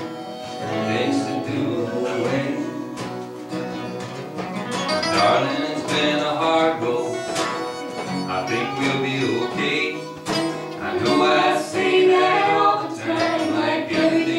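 Live acoustic folk band playing: strummed acoustic guitars and banjo with harmonica over them.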